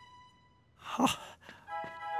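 A man's breathy sigh about a second in, its pitch falling. Music with several held notes comes in near the end.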